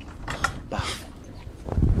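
Scuffle during a physical struggle: rustling and handling noises as a woman is pulled away from a wooden door frame. A short pitched creaking sound comes near the end.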